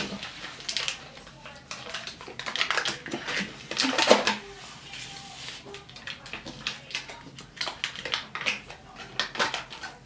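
Soft clicks, taps and rustling of cheese slices and plastic food packaging being handled on a kitchen table, with a brief murmured voice about four seconds in.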